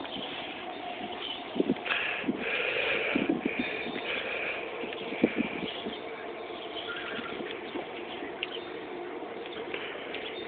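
Outdoor yard ambience: a steady low background with a few light knocks and, about two to four seconds in, some faint high-pitched chirping.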